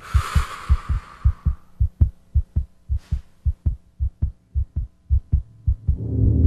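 Steady, rapid low thumping, about four beats a second, like a racing heartbeat. A hiss fades out over the first second and a half.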